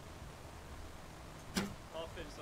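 Olympic recurve bow shot: a single sharp snap of the string as the arrow is released, about three-quarters of the way in, over faint background hiss.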